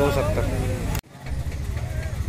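A man's voice speaks a word over a steady low rumble. About a second in, the sound cuts off abruptly at an edit, and the low rumble fades back in without speech.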